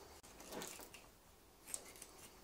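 Faint, soft sounds of a knife cutting through raw roe deer meat at the hip joint, with a small light click near the end.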